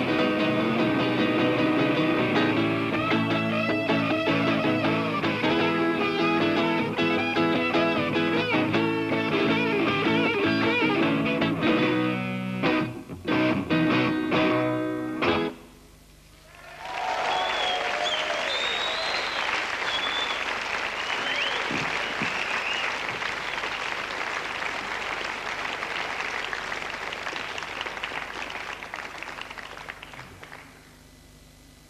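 Acoustic and electric guitar duo playing the instrumental close of a live folk-rock song, ending on a few sharp stabbed chords about halfway through. After a short pause, an audience applauds, with a few whistles, and the applause fades near the end.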